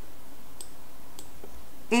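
Two faint computer mouse clicks, about half a second apart, over steady room hiss.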